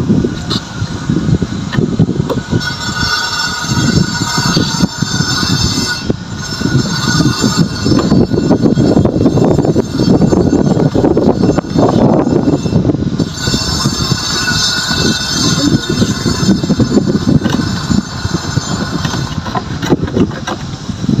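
Wind rumbling on the microphone, with a high squealing tone that rises and fades twice.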